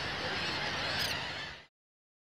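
Surf washing on a beach with wind noise, and a bird calling faintly about a second in; the sound fades out shortly after.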